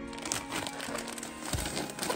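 Plastic substrate bag crinkling as hands turn it over, a run of short, uneven crackles. Background music plays underneath.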